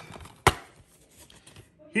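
A single sharp plastic click as a clear DVD case snaps open, about half a second in, with faint handling rustle after it.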